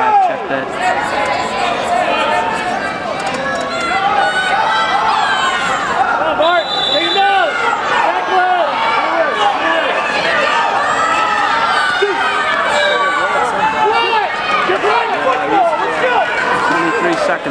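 Crowd of spectators and coaches in a gym, many voices shouting and talking over one another. About six and a half seconds in, a steady high tone lasts about a second.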